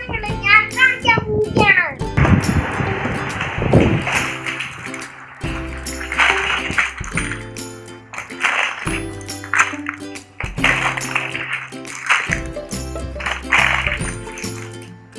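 A child's voice for the first two seconds or so, then background music with held notes over a steady beat.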